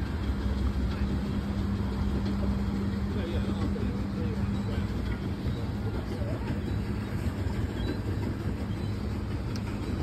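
Steady low rumbling noise aboard a pedalo on a lake: wind and water noise on the microphone, with a low steady hum for about the first half and faint voices underneath.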